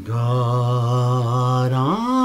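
Man singing a long low note with a gentle vibrato, then sliding up about an octave near the end, over his own acoustic guitar.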